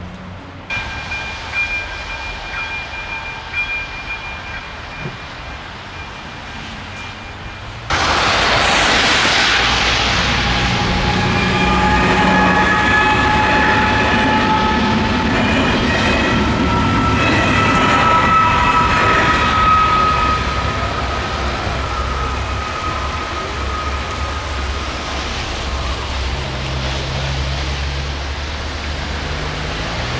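Level-crossing warning signal ringing with a steady electronic bell tone. About eight seconds in, a passenger train passes over the crossing with a loud rumble and long, high, slightly wavering tones that ease off over the last ten seconds.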